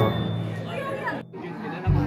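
Several people chatting, with background music underneath; the sound drops out briefly a little past the middle.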